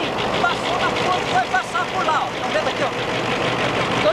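A man talking over the steady noise of a diesel freight train running past below.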